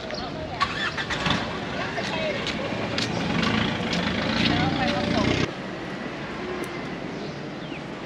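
Outdoor traffic ambience: vehicle engines running with voices of people around. About five and a half seconds in, it cuts off abruptly to a quieter, steady outdoor background.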